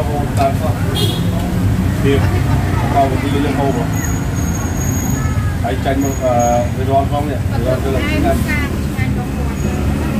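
Voices talking at a table over a steady low rumble of road traffic.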